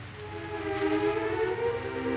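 Orchestral film score: after a brief lull, soft sustained chords enter about half a second in and swell slowly.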